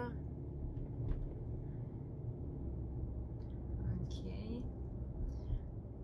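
Steady low rumble of a car's engine and tyres, heard from inside the cabin while driving slowly.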